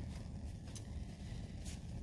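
Faint rustle of a paper lab tissue wiping a plastic test-tube cap, with two faint light touches about a second apart, over a steady low room hum.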